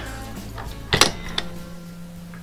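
Metal clack from an RCBS Green Machine reloading press being worked: one sharp click about a second in and a lighter one just after, over soft background music.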